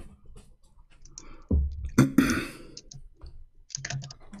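Scattered clicks from a computer, with a loud cough about two seconds in.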